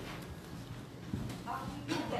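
Faint, indistinct voices with a few soft knocks, in a lull between speakers.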